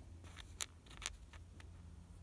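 A few faint, light clicks as fingers handle a small styrene plastic part on a cutting mat, over a low steady hum.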